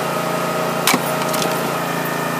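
One sharp crack about a second in as a splitting axe is driven down through stacked firewood rounds, over a steady engine hum.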